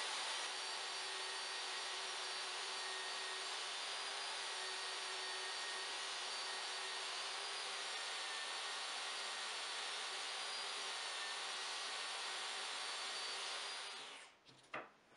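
Jobsite table saw running at a steady pitch while a thin sheet is fed through the blade in a rip cut.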